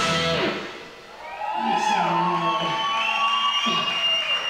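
A live rock band's full sound stops about half a second in. An electric guitar then plays on alone, with sustained notes that bend up and down in pitch and grow louder again.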